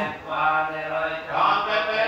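A man's voice chanting a Buddhist recitation into a microphone, in long, drawn-out tones with few breaks.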